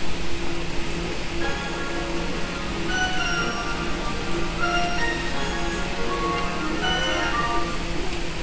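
Station platform departure melody on the Tokyo Metro Ginza Line: a short chime tune of stepped notes starting about a second and a half in. It signals that the train's doors are about to close. A steady low hum runs underneath.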